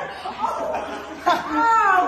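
People laughing, a voice sliding up and down in pitch in the second half.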